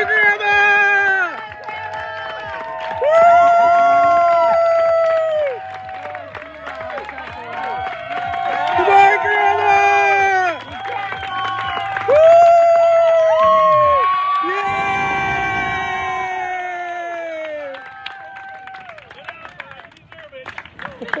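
A small crowd of spectators cheering and whooping at a finish line, with long drawn-out 'woo' calls and shouts overlapping. The cheering swells in loud bursts a few seconds in, around the middle and again about two-thirds through, then eases off near the end.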